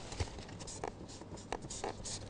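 Faint scratching of a pen writing on a paper sheet: a few short strokes.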